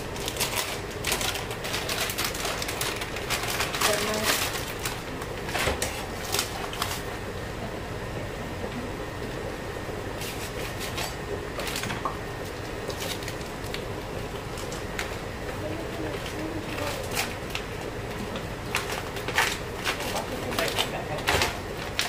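Plastic packaging of pre-cooked mussels crinkling and rustling as it is handled and opened, in irregular clicks and crackles, over a steady background hiss.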